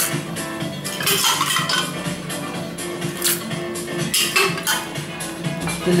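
Crushed ice poured from a metal scoop into a glass tumbler, clattering and clinking in a few scattered strokes, over steady background music.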